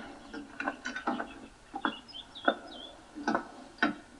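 Scattered light knocks and clicks as a soldier climbs into an open military vehicle and handles its steering wheel, with a few faint high bird chirps about two seconds in.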